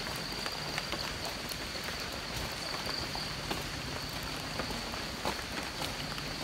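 Steady rush of floodwater pouring across a road from an overflowing pond, with scattered footsteps on wet leaf litter and a thin, steady high-pitched tone throughout.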